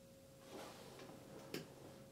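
Soft movement and a couple of clicks as a person sits down at a grand piano: a rustle about half a second in, a light click, then a sharp click about one and a half seconds in, over a faint steady tone.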